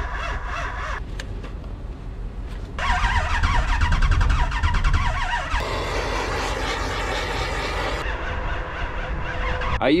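A cold 6.6-litre LBZ Duramax V8 diesel being cranked in deep cold and failing to start, heard as several short clips cut together. The loudest stretch, from about three seconds in to just past halfway, is a deep, fast, even pulsing.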